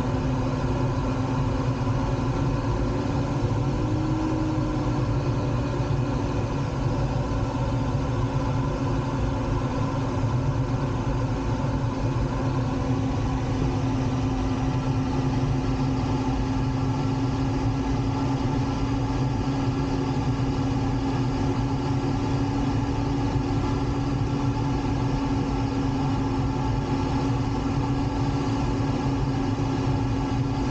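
Steady airflow noise inside a glider's cockpit in flight, with a low steady tone running under it that rises briefly about four seconds in.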